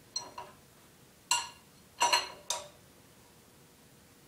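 Sharp metallic clinks at uneven intervals, the loudest about one and two seconds in, from the wrench and socket on the crankshaft bolt as a KA24DET engine on a stand is slowly turned over by hand.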